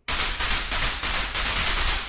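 Synthesized noise from the u-he Zebra 2 synth's noise generators: a steady, full-range hiss that starts abruptly.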